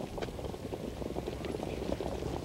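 Racetrack background noise at the start of a harness race: a dense, irregular patter of small ticks over a low rumble.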